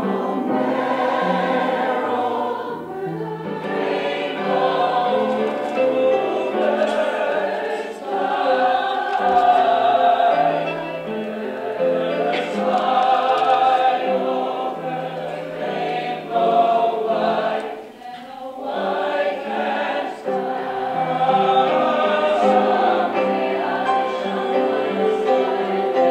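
Mixed choir of young voices singing in harmony, with sustained chords and a short break about eighteen seconds in.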